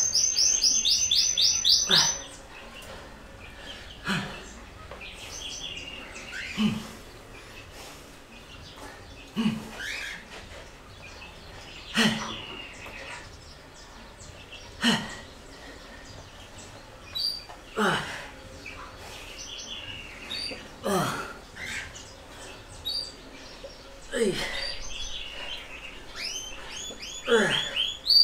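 A songbird's rapid, high chirping: a loud run in the first two seconds and again at the very end, with fainter chirps between. Under it, a man's short forceful exhale comes on each push-up rep, about every three seconds.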